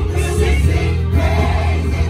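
Live gospel choir singing over instrumental backing with a strong, steady bass.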